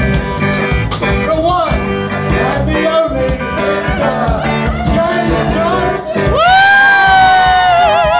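Live rock band playing with male voices singing; about six seconds in, a voice slides up into a long held note that wavers near the end, as the song builds to its close.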